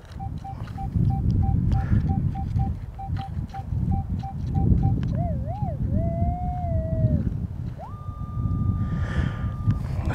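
Minelab Equinox 800 metal detector tones: a run of short, even beeps, about two or three a second, then a wavering lower tone, then a higher tone that rises and holds steady for about two seconds as the coil passes over a target reading 27. Low wind rumble on the microphone throughout.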